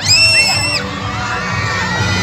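A crowd of children shouting and cheering. Right at the start one very high-pitched shriek is held for about three-quarters of a second and then drops away.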